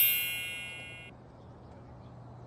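A small bell rings once: a bright metallic ding that is loudest at the start and fades away within about a second.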